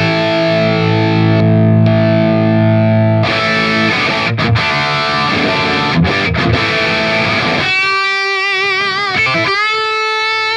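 Overdriven electric guitar lead through a Big Joe Vintage Tube Overdrive pedal boosting the dirty channel of a PT100 amp, with a searing, fat tone. A chord rings for about three seconds, then comes a fast run of notes, then sustained single notes with wide vibrato near the end.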